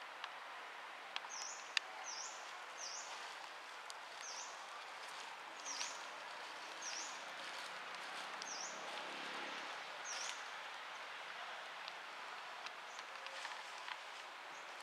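A bird repeating a short, high chirp that dips and rises, about once a second, nine times, over a steady outdoor hiss. A faint low drone sits under it in the middle.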